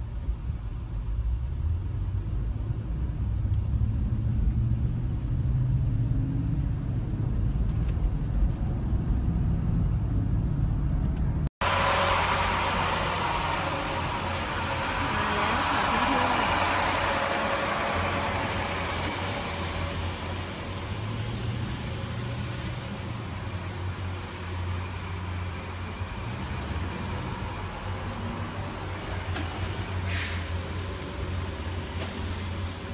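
A steady low rumble of engine and road noise heard from inside a moving vehicle. After an abrupt cut about a third of the way in, the vehicle noise goes on with more hiss.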